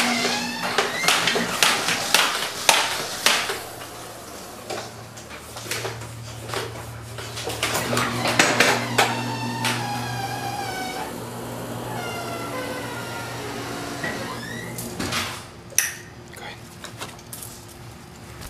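Power wheelchair drive motor humming low in stretches, starting and stopping, amid clattering and knocks. In the middle come several high drawn-out whining tones.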